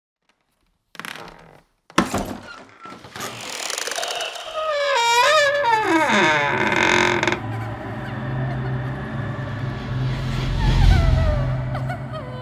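Horror-film sound design: a sharp hit about two seconds in and a swelling whoosh, then a long wavering creak of a wooden door swinging open that slides down in pitch, over a low drone that swells near the end.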